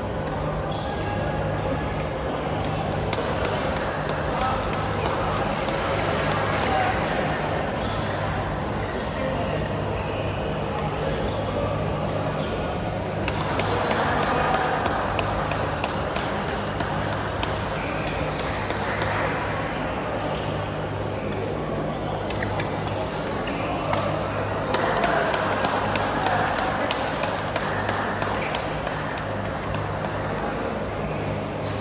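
Busy indoor badminton hall: many overlapping voices chatter across the hall, punctuated by frequent sharp clicks of rackets hitting shuttlecocks and shoes on the court floor, over a steady low hum.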